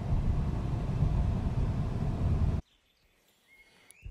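Steady low rumble of a car's cabin with the vehicle running. It cuts off suddenly about two and a half seconds in, leaving near silence.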